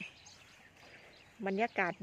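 Quiet outdoor background with faint bird calls, then a voice speaking a word near the end.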